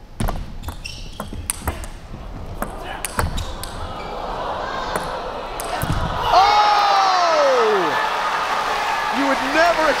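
Table tennis rally: the celluloid ball knocks sharply off the bats and the table in quick succession for about six seconds. Then comes a loud, drawn-out cry whose pitch falls away over about a second and a half, with a few short vocal sounds near the end.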